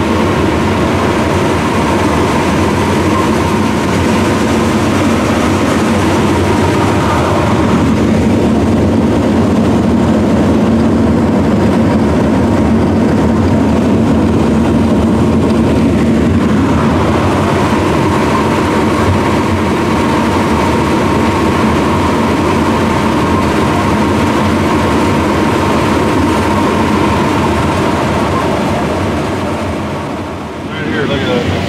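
Claas Lexion 750 Terra-Trac combine with its 18-row corn head, running steadily under load while harvesting corn, heard from inside the cab. It is a loud, continuous machine drone with a steady whine on top. The whine fades from about a quarter of the way in to about halfway, while a deeper hum grows stronger over that stretch.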